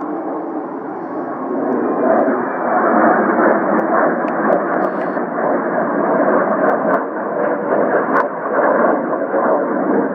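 McDonnell Douglas CF-18 Hornet jet passing low overhead in a banking break, its twin turbofan engine noise swelling over the first two seconds and then staying loud. A few faint sharp clicks come in the middle.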